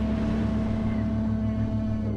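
Lighthouse foghorn sounding one long, low, steady blast. A rushing noise like wind and sea runs beneath it.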